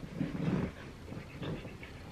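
A dog making a short, low vocal sound about half a second long near the start, followed by a few fainter short sounds.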